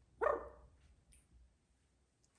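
Yellow-naped Amazon parrot giving one short call about a quarter second in.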